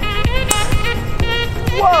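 Background music with a steady beat. About half a second in comes a single sharp crack: a golf club striking a ball off the tee. A person exclaims "Whoa" near the end.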